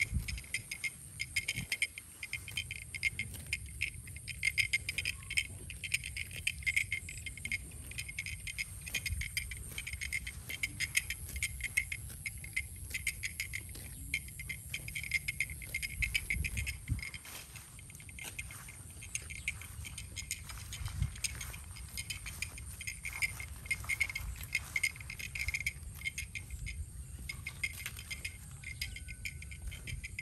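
A chorus of insects chirring: a dense, fast rattling pulse that keeps on steadily, pitched high.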